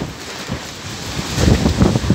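Cyclone-force wind buffeting the microphone in uneven gusts, growing louder in the second half.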